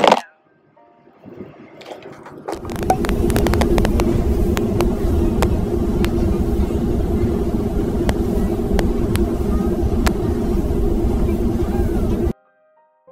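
Loud, steady rumble of a moving vehicle heard from inside, with a low hum and scattered clicks, starting about two and a half seconds in.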